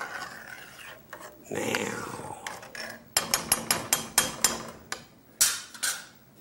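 Metal spoon stirring a pot of chopped vegetables in liquid, scraping against the metal pot, then a quick run of clicks and knocks against the pot's side and bottom.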